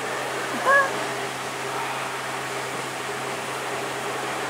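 A brief high-pitched vocal cry about three-quarters of a second in, over a steady low hum.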